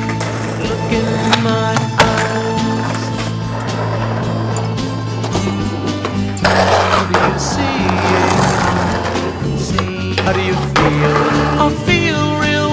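Skateboard on concrete under a music track: sharp clicks of the board early on, a long scraping rush in the middle, and the board sliding along a concrete ledge near the end.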